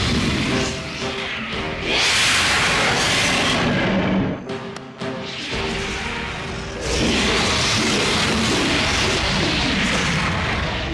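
Film score music over loud crashes and booms, the sound effects of a fight between cartoon dinosaurs, loudest at about two seconds in and again from about seven seconds in, with a brief lull in the middle.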